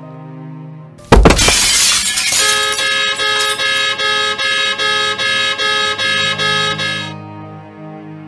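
A sudden loud crash with shattering glass about a second in, then a car horn blaring in rapid, evenly repeated blasts for about four and a half seconds before it stops; soft background music runs underneath.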